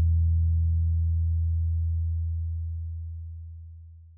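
The song's final low note from the guitar accompaniment ringing out as one deep, steady tone that fades steadily and is almost gone by the end.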